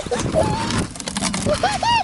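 A young child's short, high-pitched vocal sounds, several quick rising-and-falling squeaks near the end, over rustling and light knocks from a plastic bucket and its lid being handled.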